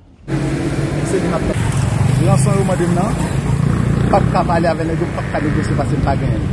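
Street noise: a motor vehicle engine running steadily close by, with people talking over it. It starts suddenly just after the start.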